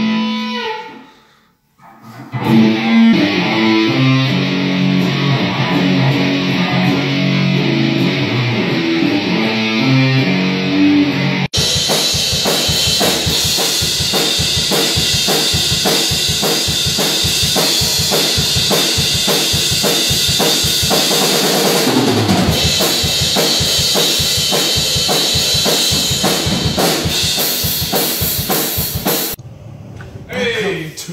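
An electric guitar plays a riff. After an abrupt cut about a third of the way in, a Pearl drum kit plays a steady fast beat with cymbals, which stops just before the end.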